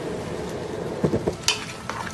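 A wooden spoon stirring a thick, steaming vegetable sauce in a metal pot over the heat, with a steady sizzle from the cooking. The spoon knocks against the pot a few times about a second in.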